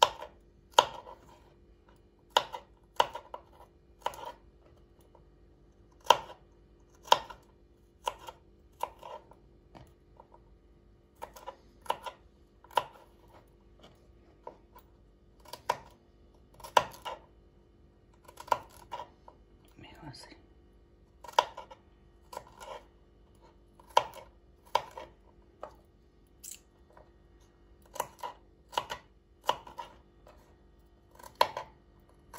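Small kitchen knife slicing garlic cloves on a wooden cutting board: each cut ends in a sharp tap of the blade on the board, at an irregular pace of about one a second, over a faint steady hum.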